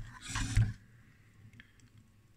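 A man's short, low wordless murmur in the first half second, then near silence with one faint click near the end.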